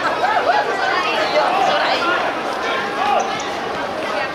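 Players' voices shouting and calling to each other during a small-sided football game, several voices overlapping.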